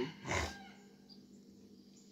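A woman's short, breathy laugh just after the start, then quiet with a faint steady hum.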